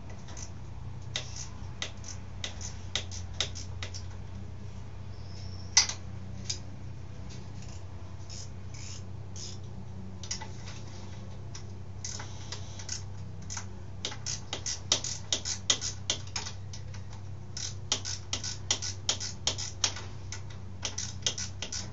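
Hand tools working on a dirt bike frame: metal clicks and taps, scattered at first, then in quick runs like a ratchet wrench being worked back and forth through the second half, with one louder knock about six seconds in. A steady low hum runs underneath.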